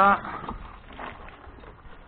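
A 12 V DC gear-motor-driven diaphragm pump running and pumping water, with soft, irregularly spaced clicks and knocks.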